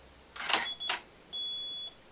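A DSLR shutter fires with a short clatter of clicks, and electronic beeps from the camera and flash gear follow: one short beep, then a longer one held for about half a second. This is a test exposure with the off-camera flashes turned down in power.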